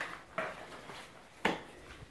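Two brief, faint sounds in a quiet room: a short soft one about half a second in, then a sharp click or knock about a second and a half in.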